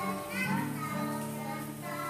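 A small group of children singing a song together, accompanied by an acoustic guitar.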